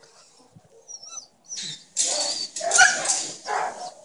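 A dog barking in a quick run of loud, harsh barks that begins about one and a half seconds in.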